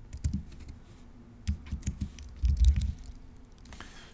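Typing on a computer keyboard: a handful of separate keystrokes with a louder cluster a little after the middle, entering a word with a capital diacritic letter made with Option and Shift held.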